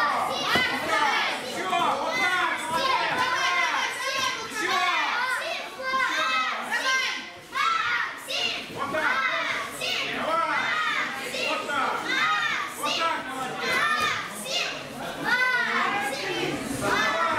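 A crowd of children shouting together, many high voices overlapping without a break, with a brief lull about halfway through.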